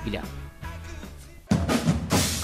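Music with drums. It is quieter at first, then loud drumming with sharp strikes starts suddenly about one and a half seconds in.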